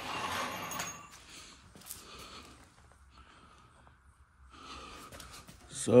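A man's noisy breath out lasting about a second, then faint scattered small noises and quiet room tone.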